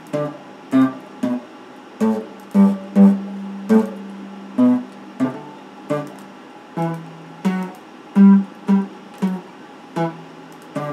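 Red Stratocaster-style electric guitar played solo: short strummed chords struck in an uneven rhythm, one every half-second to second, each dying away quickly, with one chord left ringing for about a second around three seconds in.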